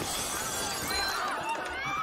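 Glass and crockery shattering, with a crowd's voices under it, from a TV drama's soundtrack.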